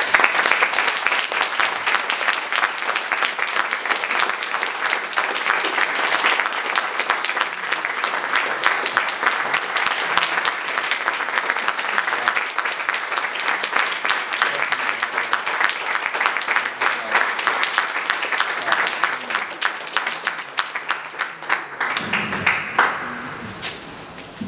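Applause from a room audience: many people clapping steadily for about twenty seconds, dying away near the end.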